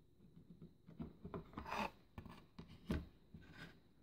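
Faint handling noises: a few soft clicks and rubs as a power-lead connector is fitted to a circuit board and the board is moved and turned over on a wooden tabletop.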